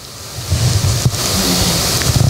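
Clothing rubbing against a clip-on lapel microphone as the wearer turns: a rustling, rumbling noise that builds up over the first half-second and holds, with a single click about a second in.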